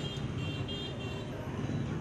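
Street ambience: steady motor-traffic rumble with some voices from a crowd. Short high-pitched beeps come in and out in the first half.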